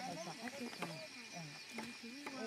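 People talking, several voices in conversation.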